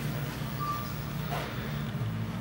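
A steady low hum with a single short high-pitched beep a little over half a second in.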